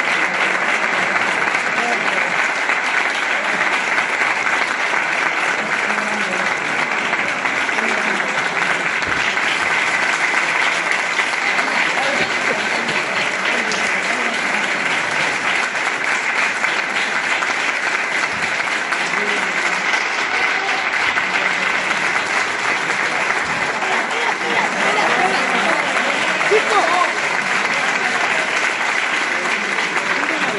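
An audience clapping steadily: sustained applause, with a few voices mixed in near the end.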